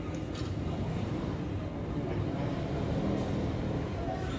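Steady low rumble of background noise with no clear tones, and a couple of faint clicks just after the start.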